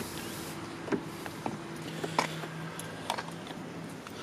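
Car door being opened by its exterior handle on a 2014 Audi Q3: a few light clicks from the handle and latch, over a steady low hum.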